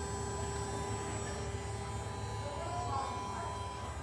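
New Holland T4 electric tractor's electrically driven hydraulic system running with the power on: a quiet, steady electric hum with a few faint steady tones, not very high-pitched.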